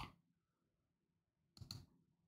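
Near silence, then a few quick computer mouse clicks near the end.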